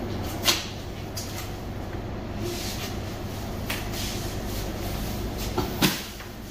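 Knocks and clatter from handling raw lamb carcasses: one sharp knock about half a second in, a few lighter clicks, and the loudest knock near the end, over a steady low machine hum.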